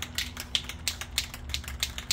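Aerosol spray-paint can being shaken, its mixing ball rattling inside in a fast run of sharp metallic clicks, about six a second.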